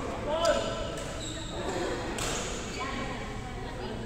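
Voices echoing in a large sports hall, with a sharp knock about two seconds in.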